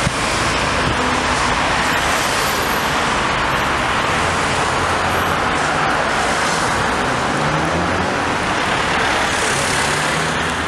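City street traffic: cars passing with a steady hum of engines and tyres, and one engine note rising about seven seconds in.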